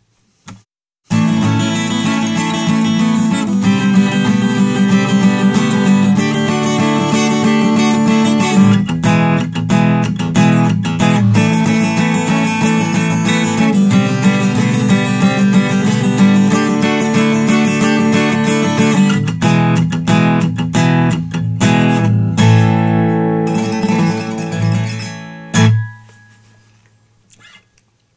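Acoustic guitar playing a riff that weaves a melody line into down-up strummed chords, starting about a second in. The last chord rings out and fades away near the end.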